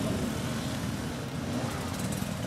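Enduro motorcycle engines running at idle, a steady low rumble.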